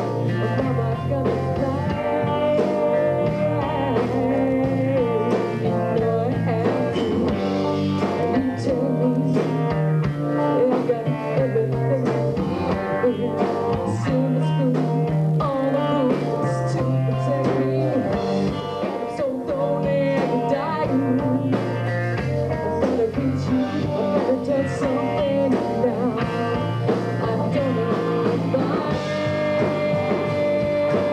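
Live rock band playing a song: a woman singing over electric guitars and a drum kit.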